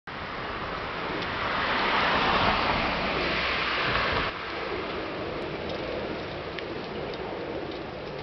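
Outdoor street noise: a rushing sound swells and then cuts off suddenly about four seconds in, leaving a steadier, quieter background hiss.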